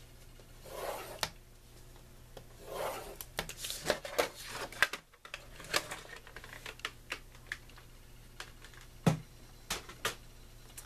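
A scoring stylus drawn along a scoring board's groove through thick cardstock, in two rubbing strokes. Then the stiff sheet is lifted and handled with papery scrapes and clicks, and there is a single knock about nine seconds in.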